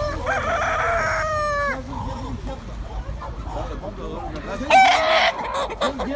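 A caged rooster crows once, a long call of under two seconds that drops in pitch at the end. A shorter, louder call comes near the end, over low market chatter.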